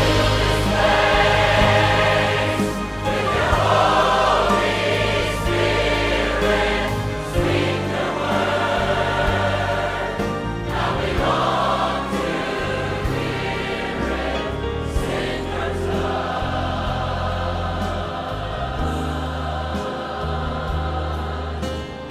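A church choir singing a worship piece with instrumental accompaniment, a full, steady sound throughout.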